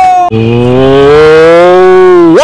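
A long, low, moo-like call, held for about two seconds, starting just after a short burst of higher-pitched music or singing. Its pitch rises a little and sinks again.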